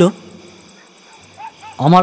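A man's narration breaks off, leaving a short gap with only faint background sound, and his voice resumes near the end.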